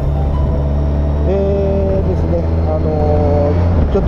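Motorcycle riding at a steady cruise: a low, even engine drone under road and wind noise, with a few held melodic notes over it.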